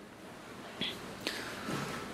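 A pause in a man's speech: a short soft hiss about a second in, then a breath drawn in just before he speaks again.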